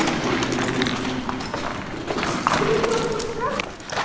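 Several people talking indistinctly, with scattered footstep clicks on a hard floor.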